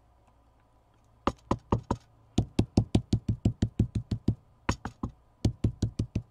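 Ink applicator tapped quickly and repeatedly onto a stencil lying on paper over a wooden table, stencilling a number in ink. A run of short, sharp knocks, about five a second, starts about a second in and goes on in bursts with brief pauses.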